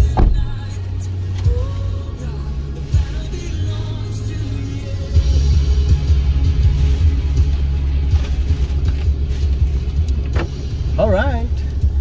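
Music with a deep bass line that steps between notes and a thin melody above it. Near the end a singing voice comes in, wavering in pitch.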